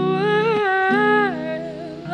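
A woman singing a long held note that falls in pitch near the end, accompanied by acoustic guitar chords.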